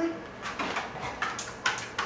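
Footsteps on a tile floor: a dog's claws clicking and a person's shoes tapping as the dog gets up and walks, a handful of short sharp clicks spread over two seconds.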